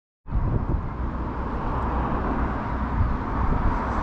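Steady outdoor background noise: a low, uneven rumble under a hiss.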